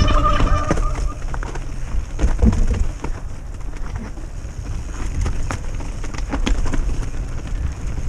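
Mountain bike riding down a dirt singletrack: a steady low rumble of wind and tyre noise on the helmet camera's microphone, with frequent short knocks and rattles from the bike over rough ground. A brief steady high squeal sounds in the first second.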